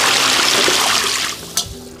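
A basinful of water poured onto a tub of pig skins, splashing for about a second and a half before tapering off.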